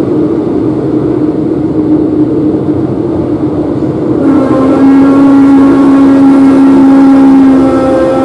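Renfe series 450 double-deck electric commuter train running, heard inside the car at the door: a steady rumble with a humming tone. About four seconds in it gets louder and a whine with many overtones joins in.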